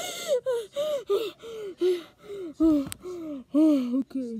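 A boy laughing hard in a string of about ten short, breathy, gasping cries, each falling in pitch.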